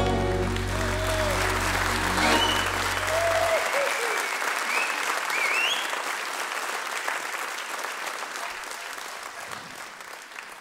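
Concert hall audience applauding at the end of a song. A low note from the band holds for the first three or four seconds, and the applause slowly dies away toward the end.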